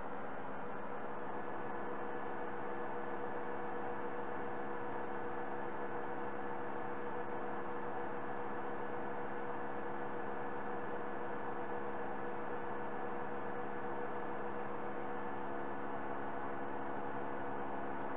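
Steady electrical hum with several fixed tones over a faint hiss, unchanging throughout.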